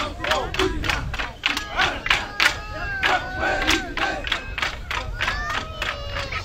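Wooden sticks of a men's stick dance struck together in a fast, even rhythm, with the dancers shouting and chanting over the clacks.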